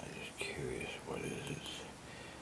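Quiet, indistinct speech with a whispered quality, starting about half a second in and stopping just before the end.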